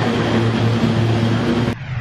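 Single-engine turboprop aircraft running at high power on the runway for takeoff: a loud, steady engine drone with a low hum. It cuts off sharply near the end.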